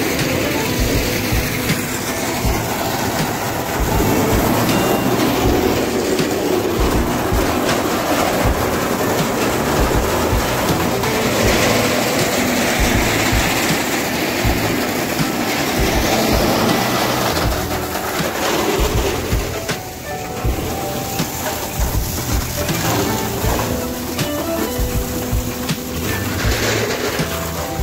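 Fire hose jet spraying water onto burning debris: a loud, steady rushing and rumbling noise, dipping briefly about two-thirds of the way through.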